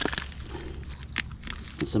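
Dry leaf litter and twigs crackling and rustling under a hand picking through the ground debris, in short irregular clicks.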